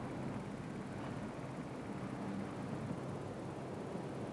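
Steady background noise with a faint low hum, no distinct events.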